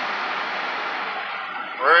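Steady hiss of road and wind noise inside a vehicle cab at highway speed, easing slightly toward the end.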